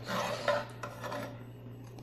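Scraping and rubbing, with a few strokes in the first half second or so that fade away, over a steady low hum.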